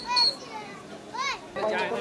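Young children's high-pitched voices chattering and calling out, with one rising-and-falling call about a second in.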